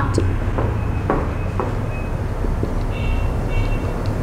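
Dry-erase marker writing on a whiteboard, the tip giving a few short high squeaks with light taps, over a steady low background rumble.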